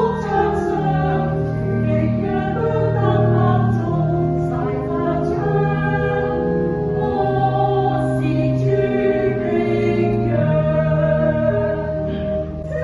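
Small mixed church choir singing a slow hymn in Chinese, in several parts, with long held notes.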